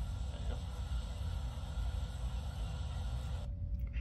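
Steady outdoor background noise from a police body camera's microphone, a low rumble with an even hiss over it. The hiss cuts off suddenly about three and a half seconds in, leaving only a low hum.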